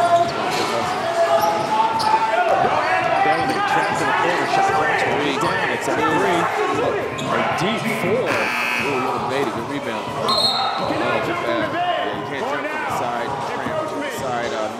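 Arena game sounds: a basketball bouncing on the hard court, with many voices from players and crowd ringing in a large hall.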